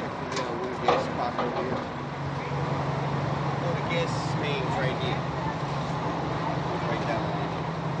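City street noise with a vehicle engine idling in a low steady hum from about two seconds in, under faint background voices, with a sharp knock about a second in.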